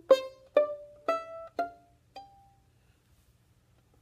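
Violin played pizzicato: five plucked notes about half a second apart, climbing in pitch, each dying away quickly, the last fading about two and a half seconds in.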